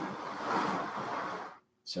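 A tray being slid across a shelf: a steady scraping rustle with no pitch that stops about a second and a half in.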